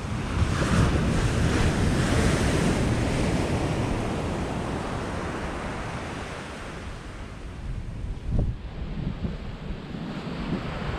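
Surf breaking and washing up a sandy beach, mixed with wind rumbling on the microphone; the noise swells in the first few seconds and then eases off. A brief thump comes about eight seconds in.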